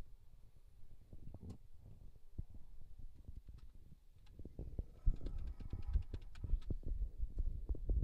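Low, irregular knocks and rumbles of handling noise on the microphone, growing louder about five seconds in, with faint light ticking for a moment.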